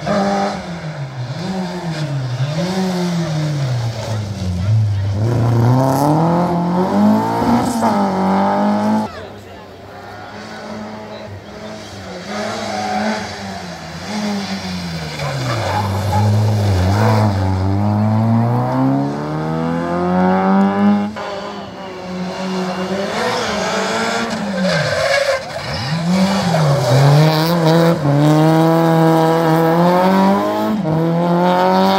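Rally car engines revving hard through a tight junction: the pitch climbs and drops again and again with each gear change, lift and braking. The level dips briefly about nine seconds in and again around twenty seconds, then builds to its loudest near the end.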